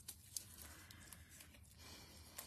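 Near silence, with faint rustling of paper as a small die-cut cardstock letter is handled and picked loose by hand, and one light click about a third of a second in.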